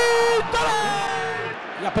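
A man's excited commentary: a long shouted exclamation held for about half a second, then trailing off with falling pitch, with crowd noise behind.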